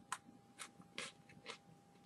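Faint crunches of a Pocky biscuit stick being bitten and chewed, about four soft crunches roughly half a second apart.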